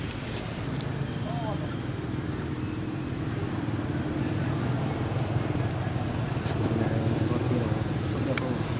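A steady low rumble of outdoor background noise with indistinct voices, and a few faint short high chirps.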